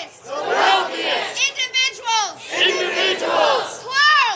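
A crowd of protesters chanting, with a woman close by shouting the chant at the top of her voice, loud and repeated phrase after phrase.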